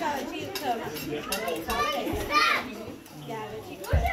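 Several people talking over one another around a crowded dining table, with a higher voice standing out briefly about two and a half seconds in.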